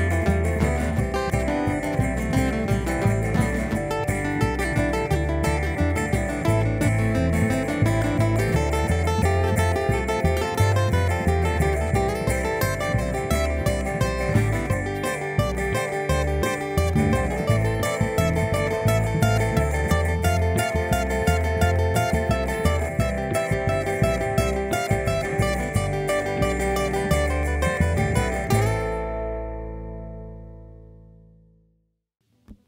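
Acoustic bluegrass trio of acoustic guitar, resonator guitar and upright bass playing a busy, fast-picked instrumental passage. Near the end it closes on a final chord that rings out and fades.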